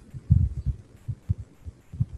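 Irregular low thuds and bumps of a stylus writing on a tablet, the strongest about a third of a second in.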